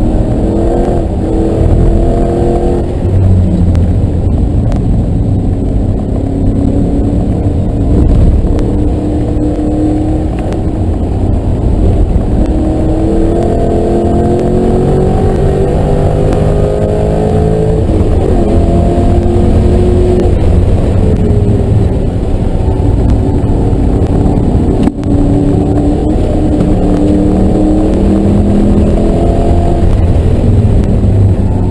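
2009 Ford Mustang GT's 4.6-litre V8 engine at full throttle on track, heard from inside the cabin, its pitch climbing repeatedly as the car accelerates and falling back between pulls.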